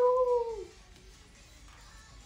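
A young woman's voice holding the last vowel of "arigatou" in one long, slightly falling note that ends before the first second is out. After it, faint background music.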